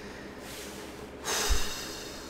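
A man's short, sudden breath through the nose, about a second and a half in, with a low thump at its peak.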